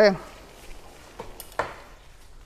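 A man's voice ends a word at the very start, then low background sound with three short, faint knocks a little over a second in.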